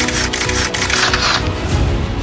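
Intro music with a quick burst of camera-shutter clicks laid over it, which stops about a second and a half in.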